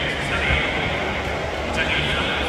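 A person's voice speaking over steady background noise.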